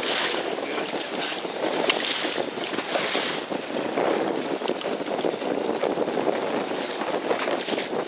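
Wind buffeting the microphone over choppy seawater splashing, with a few faint short slaps of water.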